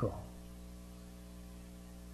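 Steady electrical mains hum, a low buzz with a ladder of evenly spaced overtones and faint hiss underneath, the last word just dying away at the very start.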